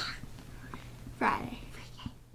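A girl whispering, with a short voiced sound about a second and a quarter in.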